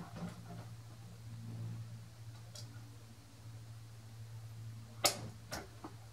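A faint steady low hum, with two sharp clicks about five seconds in, one faint click before them.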